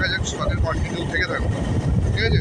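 Wind buffeting a phone microphone on a moving motorbike, a steady low rumble mixed with the bike's running noise.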